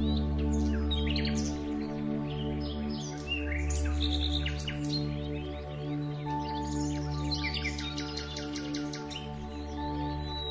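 Birds singing, with many quick chirps and trills, over soft ambient music of long-held low tones.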